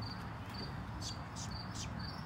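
Crickets chirping steadily, a short high chirp repeating about twice a second, over a low steady background rumble.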